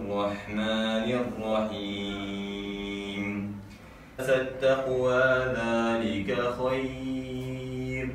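A man reciting the Quran aloud in Arabic, chanting in long, held melodic phrases. There is a short pause for breath about halfway through.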